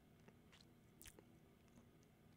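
Near silence: room tone with a few faint, short clicks, one about a second in.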